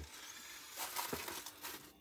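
Faint crinkling of a clear plastic bag wrapped around a cake as it is handled, with a few light clicks about a second in.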